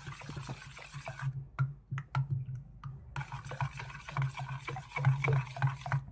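A metal spoon stirring thick yogurt raita in a stainless steel bowl: wet swishing with frequent light clicks of the spoon against the bowl, pausing for a couple of seconds about a second in.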